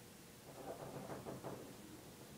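Faint scratching of a pen writing on paper, a run of short irregular strokes.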